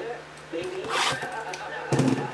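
Plastic shrink wrap torn on a sealed box of hockey trading cards: a brief rip about halfway through, then a thump near the end.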